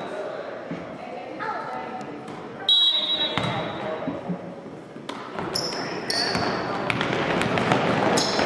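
Youth basketball game sounds in a reverberant gym: indistinct voices of players and spectators, a basketball bouncing on the hardwood floor, and a few short, high sneaker squeaks on the court after the tip-off.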